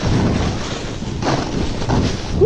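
Wind rushing over a GoPro Hero 5's microphone as a snowboard slides and scrapes downhill over snow: a steady, loud rushing noise that swells about halfway through.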